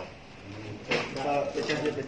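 A man talking, with a short sharp click or clack about a second in.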